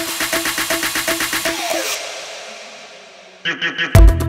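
Electronic background music with a quick, steady beat fades out with a falling sweep. Near the end a new track starts with a chanted vocal ("bu, bu") and a heavy bass hit.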